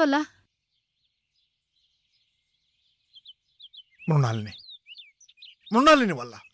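Small birds chirping in short, high calls, several a second, starting about three seconds in, between brief bits of speech; the first few seconds are silent.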